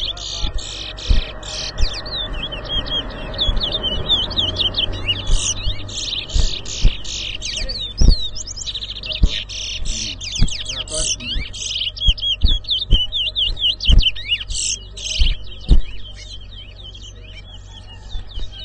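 Caged towa-towa finches singing against each other in a song contest: rapid, dense runs of high whistled chirps and trills, thinning out near the end. Sharp low thumps are scattered through it.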